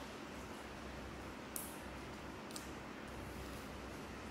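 Quiet room tone with faint handling noise from a macaque picking at a persimmon over a plastic basket, with two brief soft clicks about one and a half and two and a half seconds in.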